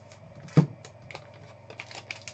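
Hands handling sealed foil trading-card packs and plastic card cases on a tabletop: a run of light, irregular clicks and taps, with one louder knock about half a second in.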